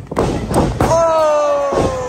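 A few heavy thuds of impacts in a wrestling ring in quick succession. About a second in, a long loud shout begins and slowly falls in pitch.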